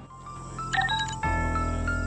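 Music: a short electronic sting, with a quick run of high notes about halfway in, then a held chord over a deep bass.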